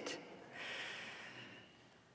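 A man drawing a faint breath, a soft hiss lasting about a second.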